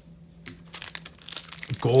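A foil Pokémon TCG booster pack wrapper crinkling as fingers tear it open. The crinkling starts about a second in, as quick, dense crackles.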